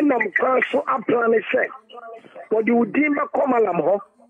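Speech only: one person talking steadily over a telephone line, with a brief lull about two seconds in.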